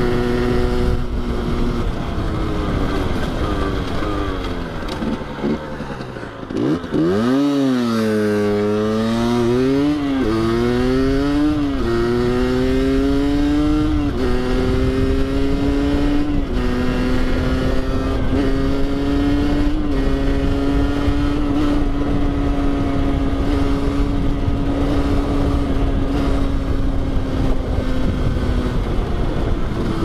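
Rieju MRT 50's two-stroke single-cylinder engine under way: cruising steadily, then the revs fall about four to seven seconds in as the bike slows. It then accelerates through four quick upshifts, the pitch climbing and dropping at each one, and settles into a steady cruise for the second half.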